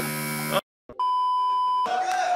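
A game-show buzzer sounds as a countdown timer hits zero, cut off about half a second in. After a short silence comes a steady electronic beep lasting just under a second.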